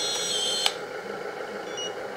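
High-pitched whine from an RC hydraulic bulldozer's small hydraulic pump and blade-lift hydraulics as the blade is worked from the radio, shifting slightly in pitch and stopping with a sharp click about two-thirds of a second in; a faint hiss follows.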